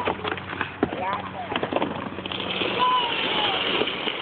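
Flattened cardboard box crackling and then scraping over a concrete sidewalk as it is pulled along with children sitting on it, the scrape growing louder from about two seconds in.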